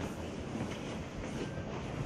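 Steady low background rumble and hiss of room noise, with no distinct events.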